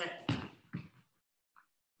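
A man's voice calling a short coaching cue, then near silence for the last second.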